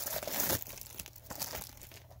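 Clear plastic shrink wrap crinkling as it is handled and pulled off a small cardboard blind box, loudest in the first half-second, then softer crinkles.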